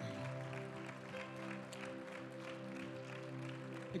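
Keyboard holding a soft, sustained chord, with light clapping from the congregation over it.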